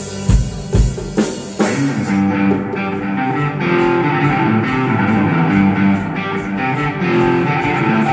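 Live afro-psychedelic band music: drum kit hits for about the first two seconds, then the drums drop out and electric guitars carry a melodic riff on their own.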